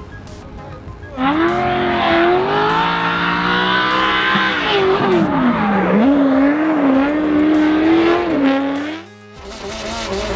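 900 hp V8 in a Volkswagen Passat drift car, fed through a sequential eight-into-one header, screaming as it is worked through a drift. It comes in suddenly about a second in, its pitch sags in the middle and then rises and falls quickly with the throttle. It cuts out briefly near the end.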